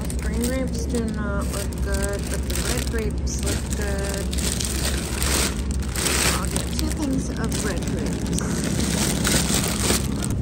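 Plastic grape bags crinkling as they are picked up and squeezed, loudest about five to six seconds in, over untranscribed voices early on and a steady low hum.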